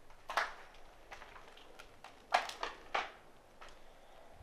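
Footsteps scuffing and crunching on a gritty, debris-covered floor, coming irregularly about every half second to a second, with a cluster of three quick steps a little past the middle.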